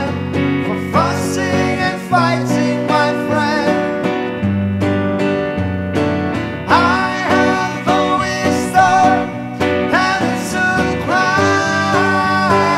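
Live acoustic guitar and electric guitar playing a song together, with a man singing phrase by phrase into the mic.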